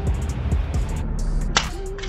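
Fidget spinner clattering to rest on brick pavers after a drop: a few sharp clicks and knocks, the strongest about a second and a half in, over background music.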